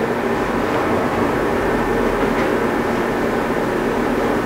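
Steady room noise in a small room: an even, unbroken hum and hiss with no speech, typical of a running ventilation or heating unit and the recording's own noise floor.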